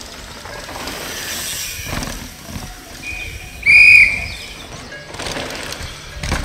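A loud, steady whistle blast about two-thirds of the way through, after a couple of fainter, shorter whistle tones, over the rumble and dirt noise of downhill mountain bikes passing on the track. A whistle like this on a downhill course is a marshal's warning that a rider is coming.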